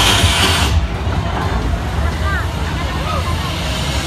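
Fairground midway noise: a steady low rumble with scattered voices and music. A loud hiss cuts off abruptly under a second in.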